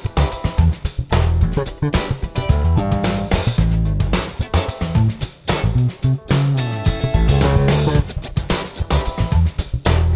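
Vychodil Precision-style electric bass played fingerstyle in a funky line over a drum-kit groove, recorded direct through a preamp.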